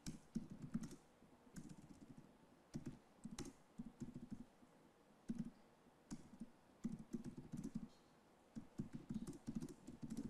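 Faint typing on a laptop keyboard: irregular runs of keystrokes, each burst lasting about half a second to a second, with short pauses between them.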